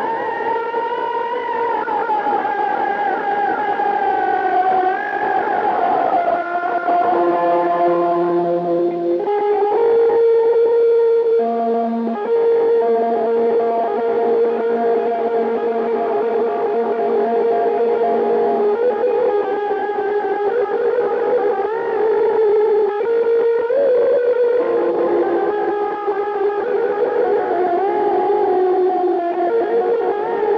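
Electric guitar playing an Azerbaijani wedding melody through echo and distortion effects, with long held notes that slide and waver in pitch.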